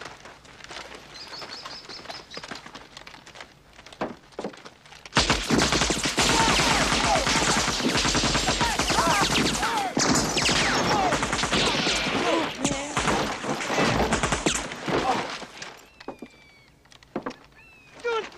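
AK-47 assault rifle (7.62×39 mm) firing on full automatic in long, sustained bursts, starting about five seconds in and going on for about ten seconds before stopping.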